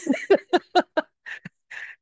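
Someone laughing: a quick run of short 'ha' bursts, about four or five a second, trailing off into two breathy exhales near the end.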